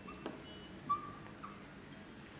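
Marker pen squeaking on a whiteboard as lines are drawn: a few short high squeaks, the longest about a second in, with a light tap of the marker tip.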